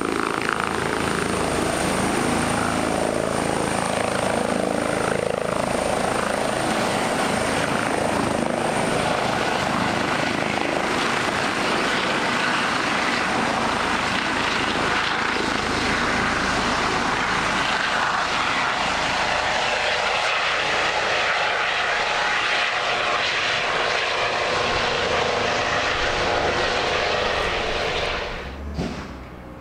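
Airbus EC135 rescue helicopter's turbines and rotors running at takeoff power as it lifts off from a field, hovers and climbs away, steady and loud throughout. A thin high whine sits on top for the first nine seconds or so, then fades out.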